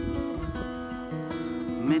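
Acoustic guitar being strummed, its chords ringing on, with low wind rumble from a breeze buffeting the phone's microphone.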